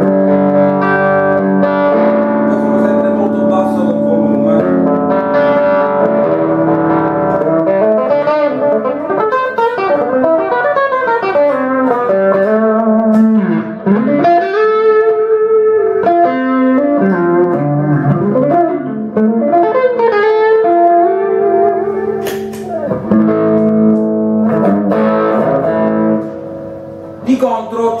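Cort semi-hollow electric guitar played through a SortinoGP distortion pedal set to its LED/diode clipping, giving a much more aggressive distorted tone. It plays a lead line of sustained notes with string bends and vibrato.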